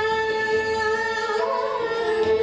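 Female Hindustani classical voice singing Raag Bhairav, holding one long note, with a short ornamented turn in pitch near the end, over tanpura and harmonium accompaniment.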